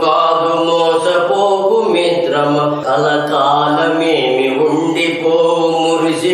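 A man singing a Christian devotional song in a chanting style, holding long notes, over a steady low instrumental accompaniment.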